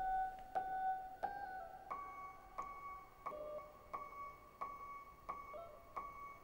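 Mutable Instruments Elements modal synthesizer voice playing a steady run of short, pitched notes, about three every two seconds, each one sounding and fading away. A square LFO clocks the notes while the muscle-controlled quantizer changes their pitch, so the melody steps up about two seconds in without the rhythm changing.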